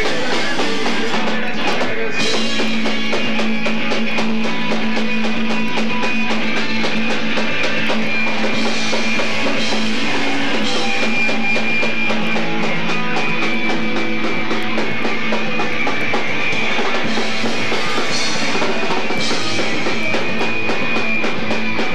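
A rock band playing live: electric guitars and bass over a drum kit, loud and continuous.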